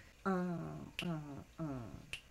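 Finger snaps with a voice giving three short calls that fall in pitch, in the manner of a count-off setting the tempo before the band comes in.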